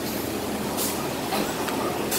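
City street traffic noise on a bus route: a steady mix of bus and truck engines and tyre hiss, with one short, sharp air hiss a little under a second in.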